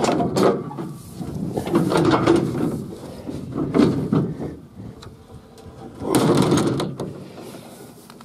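Rustling and scraping handling noises as the hood of a Wade Rain wheel-line irrigation mover is lifted, in several irregular bursts, the loudest about six seconds in.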